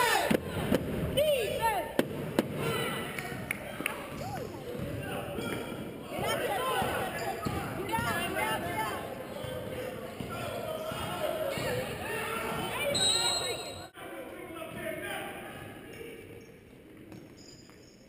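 Basketball game in a gymnasium: a ball bouncing on the hardwood court and indistinct shouts from players and spectators. A short high whistle blast comes about two-thirds of the way in, and the noise falls off after it.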